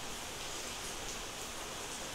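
Room tone: a steady, faint hiss with no distinct sound in it.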